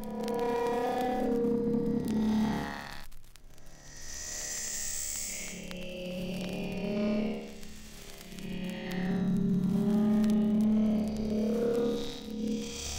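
Jungle / drum & bass track: sustained, effects-processed synthesizer tones that swell and fade, with a brief drop in level about three seconds in.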